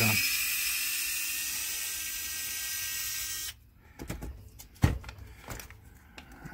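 Small cordless electric screwdriver running steadily for about three and a half seconds as it backs out a screw, then cutting off suddenly. A few light clicks and knocks follow.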